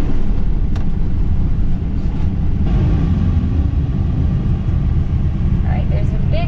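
Class C motorhome driving slowly over a dirt road, heard inside the cab: a steady low rumble of engine and tyres.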